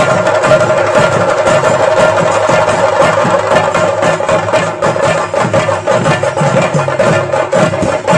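Theyyam ritual percussion: chenda drums beaten with sticks in a fast, dense, continuous rhythm, with a steady held tone running under the strokes.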